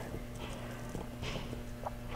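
Faint, scattered clinks and ticks of a steel Sprenger prong collar's links and chain being handled and set down on a cloth-covered table, over a steady low mains hum.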